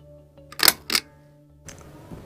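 Two sharp clicks about a third of a second apart, a pull-cord light switch being pulled and the light going out, over faint steady background music.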